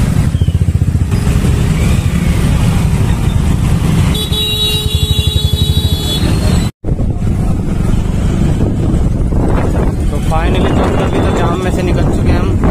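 Motorcycle engine running close by with a steady fast pulse, in jammed city traffic. A vehicle horn sounds for about two seconds around four seconds in. The sound cuts out for an instant near seven seconds.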